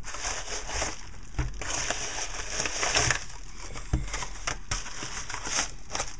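A padded kraft-paper mailer and paper crinkling and rustling as it is handled and its contents are pulled out, with a few light knocks.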